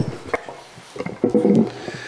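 Handheld microphone being picked up and handled: a sharp click about a third of a second in, then irregular bumps and rubbing noise.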